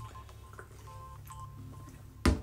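A quiet sip from a beer can, with faint short beeping tones repeating in the background.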